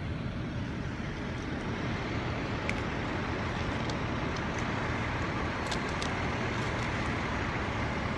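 Steady low rumble of several fire trucks' diesel engines running, with a few faint clicks.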